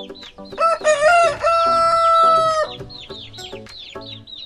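A rooster crowing once: a loud call of a few short rising notes that ends in one long held note, from about half a second to nearly three seconds in. Light background music and repeated high chirps run under it.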